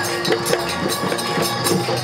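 Live Bihu folk music led by a dhol drum, played in a fast, even beat of about four strokes a second.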